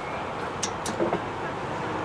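Steady road-traffic noise from the street, with two light clicks a little past half a second in and a short knock about a second in.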